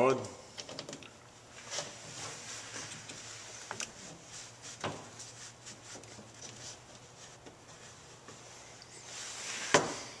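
Rubber heater hose being handled and fitted at an EVAP vent solenoid: faint rustling with a few scattered light knocks and clicks, and a sharper click near the end.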